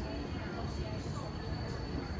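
Street ambience: faint, indistinct voices over a steady low rumble.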